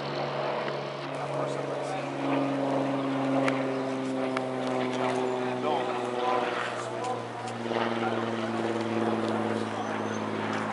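Music with long held notes that change pitch every second or so, over a steady low drone, with onlookers' voices mixed in.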